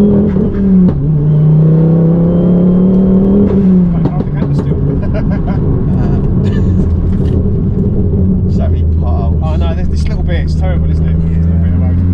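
Tuned turbocharged Ford Focus ST petrol engine heard from inside the cabin, pulling hard through the gears. The note climbs, drops at a gear change just under a second in, climbs again, then drops at a second shift about four seconds in and settles to a steady, lower drone. The shifts come short of full revs, as the engine won't currently rev past 5,000 rpm because of an unresolved fault.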